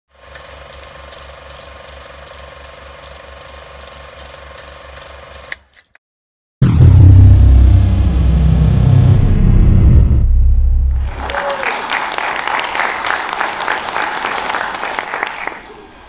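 Intro sound effects: steady mechanical ticking at about three ticks a second, then a brief silence, then a loud deep rumble with a high tone sliding downward. The rumble gives way to several seconds of dense crackling noise.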